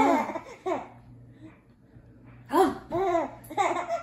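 An infant laughing in short, pitched bursts, three close together in the second half, in reply to a boy's drawn-out open-mouthed voice that breaks off right at the start.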